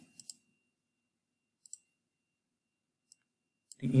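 A few short, faint clicks of a computer mouse, spaced out over near silence: two together at the start, two more about a second and a half later, and a single faint one near the end.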